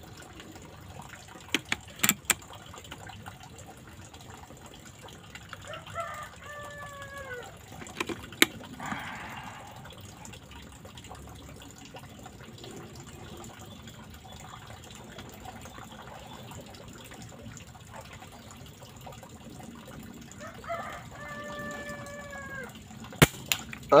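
A rooster crows twice, faintly, with a few sharp clicks about two seconds in. Near the end, an air rifle fires a single sharp shot and the slug hits the target.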